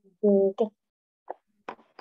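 A woman's short hesitant vocal sound in two quick parts, like an "mm-hm", then two faint small clicks in the second half.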